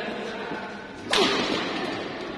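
A badminton racket hitting a shuttlecock hard once, a sharp crack about a second in that rings briefly in the hall.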